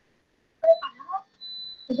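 Brief silence, then a short snatch of a voice, then a thin, steady high-pitched electronic beep lasting about half a second near the end.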